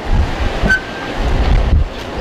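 Wind buffeting the microphone in low, rumbling gusts, with a short high squeak about two-thirds of a second in.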